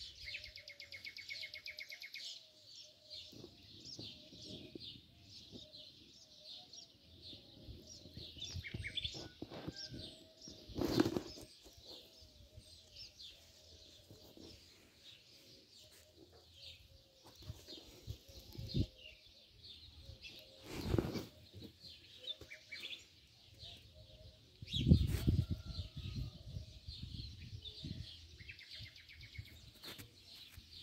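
Small birds chirping steadily in the trees. Three louder, brief rushes of noise hit the microphone about 11, 21 and 25 seconds in, the last the loudest.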